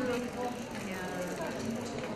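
Indistinct voices of people talking, too unclear to make out words.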